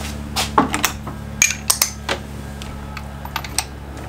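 Light metallic clicks and clinks of hand tools and engine parts being handled, about half a dozen in the first two seconds and a few more later, over a steady low hum.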